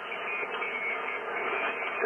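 Yaesu FTDX10 HF transceiver's speaker giving out steady single-sideband receive static, a narrow hiss with nothing above voice pitch. This is the band noise heard between the operator letting go of the mic and the other station's reply coming through.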